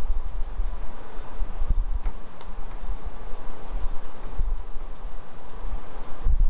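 Low, uneven rumbling bumps with a few light clicks: handling noise as things are moved about.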